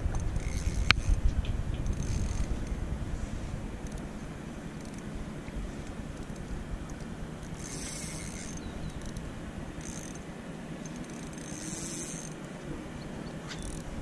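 Spinning reel being worked against a bent rod on a hooked fish: mechanical ratchet-like clicking from the reel, with a sharp click about a second in and several short high-pitched bursts from the reel, the strongest about halfway through and near the end.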